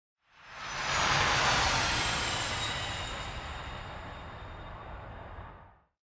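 Intro whoosh sound effect: a rushing noise that swells in quickly and then slowly fades, with a faint high whine falling in pitch. It cuts off just before the end.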